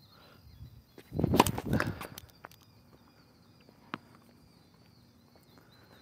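A tennis serve: the racket strikes the ball a little over a second in, a short cluster of sharp hits lasting under a second. A single sharp knock follows about four seconds in. Faint, repeated high chirping runs throughout.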